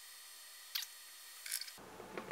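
Two faint, sharp clicks, about three-quarters of a second apart, from the plastic oil jug and its flexible spout while motor oil is poured into the engine's filler neck.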